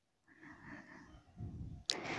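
A quiet pause with faint low noise that sounds like soft breathing at the microphone, ending in a short sharp click just before the end.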